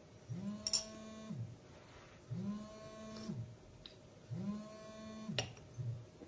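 A low buzz sounding three times, each about a second long and about two seconds apart; its pitch slides up as it starts and down as it stops.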